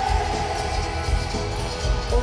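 Live rock band playing in an arena, the drums keeping a steady beat under the full band.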